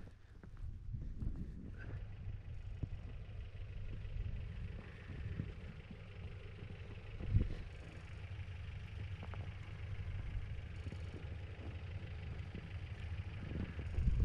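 Toyota Sunrader camper's 22R four-cylinder engine running as a steady low rumble while it drives slowly through deep snow, with a single thump about seven seconds in.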